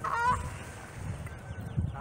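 Canada goose honking: a strong honk right at the start, then fainter honks around the middle, over a low wind rumble on the microphone.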